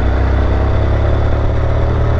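Honda NC700X's 670 cc parallel-twin engine running through an aftermarket Akrapovic exhaust at a steady cruise, heard from the rider's seat, with an even, unchanging pitch.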